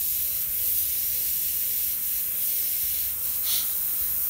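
Airbrush spraying paint, a steady hiss of compressed air from the nozzle, briefly stronger about three and a half seconds in.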